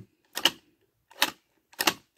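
Three short plastic clicks, unevenly spaced, from a Mattel Jurassic World Epic Evolution Triceratops toy as its lever-driven head-ramming action is worked.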